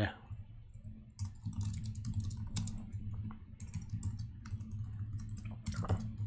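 Typing on a computer keyboard: irregular runs of key clicks, over a steady low hum.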